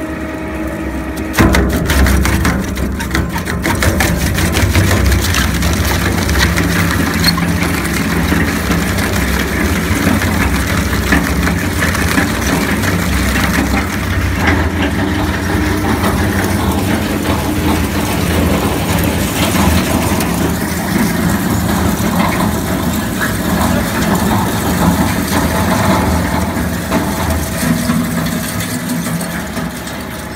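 Industrial shredder running. From about a second and a half in, its toothed rotor chews through cooling-box material with dense, continuous crunching and cracking over the machine's steady hum.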